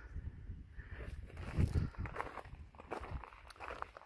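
Wind rumbling on the microphone at an exposed mountain viewpoint, with a few soft scuffs like footsteps on gravel about halfway through.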